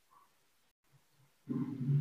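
Near silence for about a second and a half, then a low, rough voiced hum from a person that runs on to the end.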